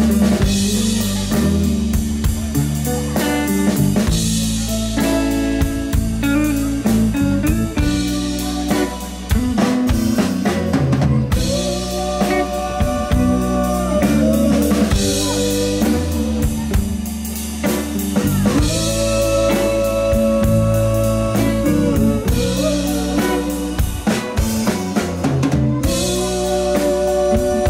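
A live rock band playing: drum kit keeping a steady beat with snare and bass drum, under electric guitar, bass and keyboards, with a melody line that slides between long held notes.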